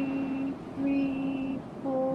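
A woman's voice counting breaths slowly, each number drawn out on one steady pitch, with a low wash of surf behind.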